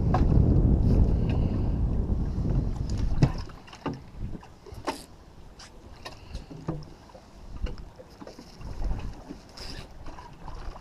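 Wind buffeting the microphone with a heavy low rumble, which eases off suddenly a little over three seconds in. After that, scattered light clicks and knocks of fishing tackle being handled on an aluminium boat.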